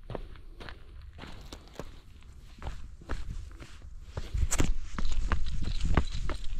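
Footsteps of one person walking over sand-covered paving and onto loose sand, a few steps a second, louder from about four and a half seconds in.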